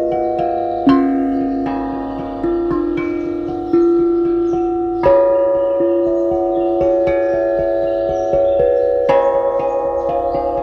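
Music of slow, ringing struck notes on a pitched percussion instrument. Each note is left to sound on under the next, with a fresh strike every second or so.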